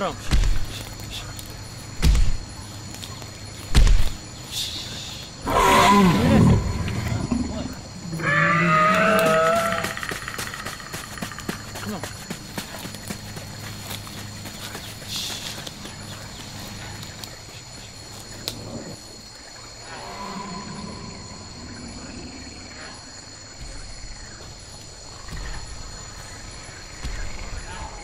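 Sound-effect creature vocalisations: three deep booming thuds about two seconds apart, then a loud roar that slides steeply down in pitch, followed by a second wavering, pitched howl. A faint steady high whine runs underneath.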